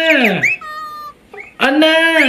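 Two drawn-out meow-like calls, each about a second long and sliding down in pitch at the end, with a short, quieter high whistle between them.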